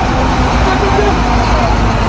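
Street traffic noise, chiefly the low, steady engine running of a bus and trucks moving slowly close by, with people talking in the background.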